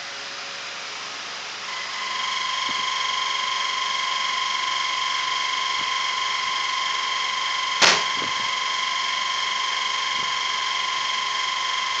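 A steady, high-pitched machine whine comes on about two seconds in and holds without changing pitch. About eight seconds in there is a single brief sharp sound.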